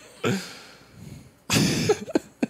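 A man coughing: a faint breath near the start, then one loud cough about one and a half seconds in.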